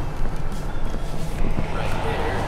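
A van driving: a steady low engine and road drone, with music underneath.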